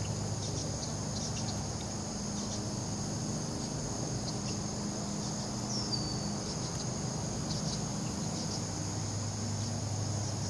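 Steady, even chorus of insects calling in a high register, with a low steady hum underneath. A single short falling whistle sounds about six seconds in.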